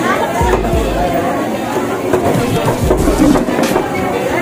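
Background chatter of several people talking at a busy market fish stall, with music playing underneath and a few low thuds.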